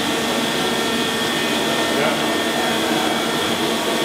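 Steady whirring machinery noise in a machine shop, with a faint constant high whine over it.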